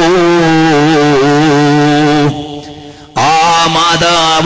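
A man's voice chanting a long held melodic line on one steady pitch, wavering slightly. It breaks off a little past two seconds in and picks up again about three seconds in.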